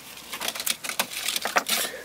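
Handling noise: a quick, irregular run of light clicks and rustles as a paper matchbook is put away and the hand-held camera is moved.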